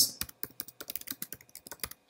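Computer keyboard typing: a quick, irregular run of about a dozen key clicks in under two seconds as a short phrase is typed.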